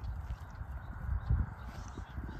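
Cattle grazing close by, cropping and tearing grass, with a low rumble underneath.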